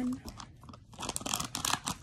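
Plastic foil blind-bag wrapper crinkling as it is handled and cut open with scissors, a quick run of sharp crackles that starts about a second in after a brief lull.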